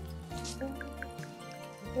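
Background music with sustained tones and bass notes. Over it, a cat licks and chews food from a stainless-steel bowl, making a few small wet clicks.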